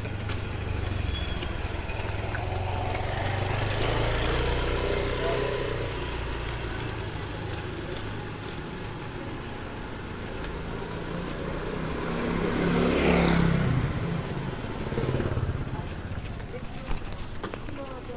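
Street ambience in a narrow lane: small motorcycle engines running, with a louder one passing close about two-thirds of the way through, and people's voices in the background.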